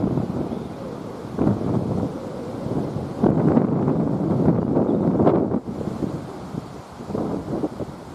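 Wind buffeting an outdoor microphone: a low, rough rumble in gusts, strongest in the middle stretch, then easing off near the end.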